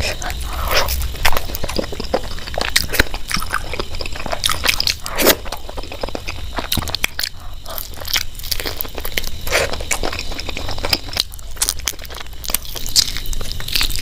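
Close-miked eating: biting into and chewing mutton curry meat pulled from the bone by hand, with many irregular wet mouth clicks and crunches.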